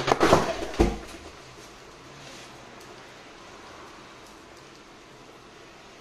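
Punctured Xiaomi BN62 lithium-polymer phone battery going into thermal runaway and venting in a flash of flame: a loud, sudden rush of noise with a second sharp peak just under a second in, dying away after about a second.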